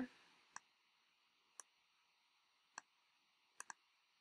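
Five sharp computer mouse clicks, unevenly spaced, the last two in quick succession, with near silence between them.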